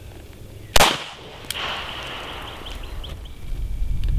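A single pistol shot about a second in, with a short ringing tail after it.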